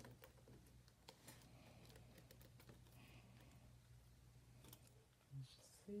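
Near silence: a steady low room hum with faint, scattered clicks and taps of hands handling craft materials at a tabletop. A voice starts right at the end.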